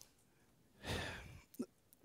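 A man's audible breath, a soft breathy rush about a second in that lasts about half a second, in an otherwise quiet pause of a talk.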